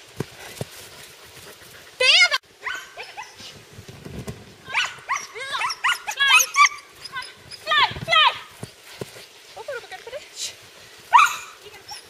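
A dog barking in several short barks while running an agility course, mixed with a handler's called commands.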